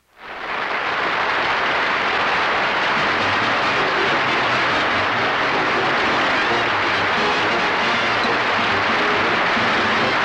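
Studio audience applauding steadily, building up within the first second, with band music faintly underneath.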